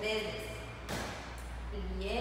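A person's voice, with a single sharp thump about a second in.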